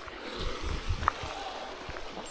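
A few dull low bumps from a body-worn action camera being handled, over a quiet outdoor background.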